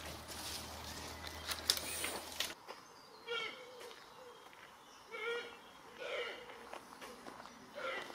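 Brush and twigs rustling as branches are handled, with a low hum, then after a sudden cut a quieter forest path where four short animal calls sound at uneven intervals.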